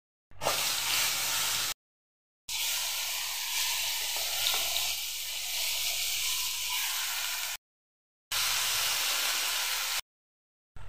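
Ground paste dropped into hot oil in a steel wok, sizzling as it hits the oil and then frying with a steady sizzle while it is stirred with a steel spoon. The sound cuts out dead twice, for under a second each time.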